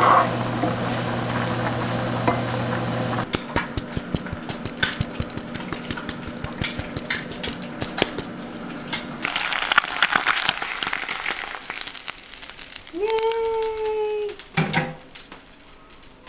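Shrimp, onion and garlic sizzling in an oiled frying pan, with crackling spits and the scrape and tap of a wooden spatula stirring them. A steady low hum lies under the first few seconds, and the sizzle swells about two-thirds of the way in.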